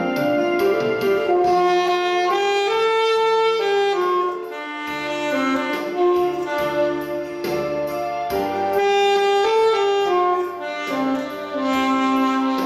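Alto saxophone playing a melody of long held notes joined by short runs, over a recorded backing track with piano, bass and a steady beat.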